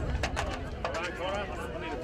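Indistinct voices and calls of players and spectators carrying across an open football ground, with a few sharp knocks in the first second.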